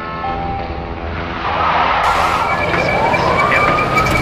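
Police car siren wailing, its pitch rising over the last second or so, over a rushing vehicle noise that grows louder from about halfway in.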